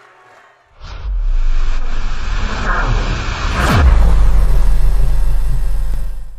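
Cinematic logo-sting sound effects: a deep bass rumble starts about a second in, two whooshes sweep through, the second falling in pitch, and a loud low drone holds after them.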